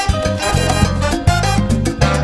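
Salsa band playing an instrumental passage with no vocals: a full Latin ensemble with bass, percussion and horns, in a studio recording.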